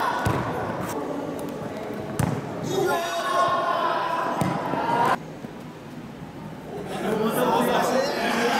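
Soccer ball being kicked and bouncing on a hard indoor court floor, several sharp thuds, with raised children's voices echoing in a large hall. The voices cut off abruptly about five seconds in and come back near the end.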